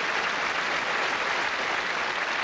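Theatre audience applauding steadily, a dense even clapping.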